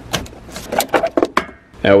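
A quick series of sharp plastic clicks and rattles as a wiring connector is worked loose and pulled off a snowmobile's voltage regulator. A voice begins near the end.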